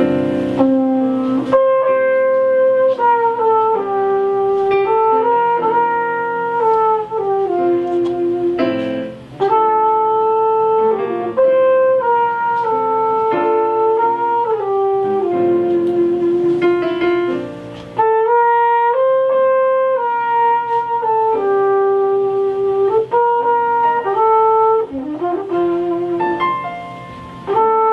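Flugelhorn playing a slow melody of long held notes in phrases, with brief breaks about a third and two thirds of the way through, accompanied by a Casio digital piano.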